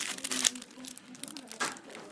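Foil wrapper of a Yu-Gi-Oh booster pack crinkling and tearing as it is opened, loudest about half a second in, with another crinkle near the end. Faint voices underneath.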